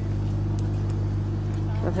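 A steady low drone made of several held tones, unchanging in pitch and level, with a voice starting near the end.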